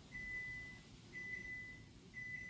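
Oven's electronic signal beeping to announce it has reached its set temperature: a single high, steady beep about once a second, each lasting most of a second, twice.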